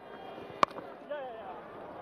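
A single sharp crack of a cricket bat hitting the ball, a little over half a second in.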